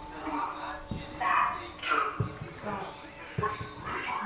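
Short, broken voice-like fragments over a steady hum, with no clear words; the investigators caption it as a spirit voice saying "leave".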